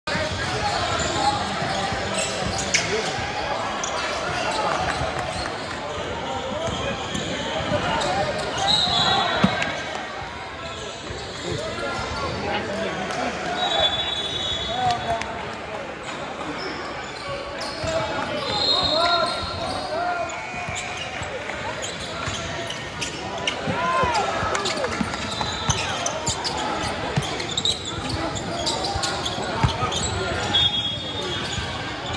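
Basketball being dribbled on a hardwood gym court, with short high squeaks from sneakers and a steady mix of players' and spectators' voices echoing in the hall.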